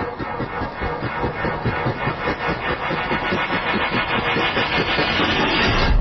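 Intro sound effect: a dense, rapidly pulsing rumble that swells in loudness, ending in a heavy low hit.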